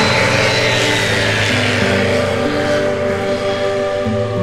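Background music with sustained notes, over which a light aircraft's engine passes low, its rush fading away by about three seconds in.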